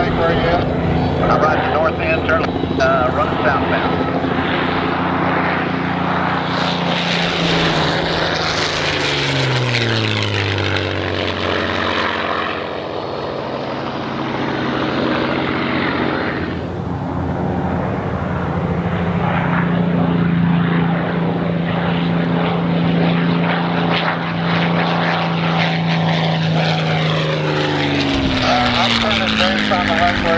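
P-51C Mustang's Packard Merlin V-12 engine on low fly-by passes. The engine note drops in pitch as the fighter goes past about nine seconds in, holds steady for a stretch in the second half, and drops again near the end as it passes once more.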